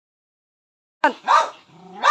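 A dog barking twice in quick succession about a second in, then a low, steady growl.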